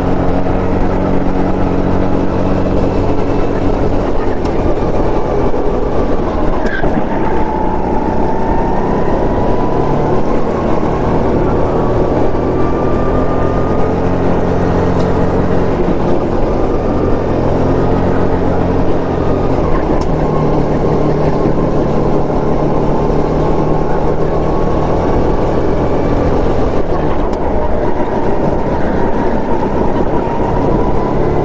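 Go-kart engine running hard under the driver, heard close up from the kart itself, loud and continuous, its pitch rising and dropping every few seconds as the throttle is lifted and reapplied through the corners.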